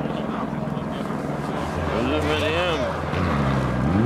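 Rally car engines on a snow stage: a steady engine note from a car that has just passed, then the next rally car's engine rising in pitch as it accelerates into the corner near the end.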